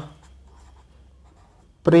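Marker pen writing on paper: faint scratching strokes as letters are drawn.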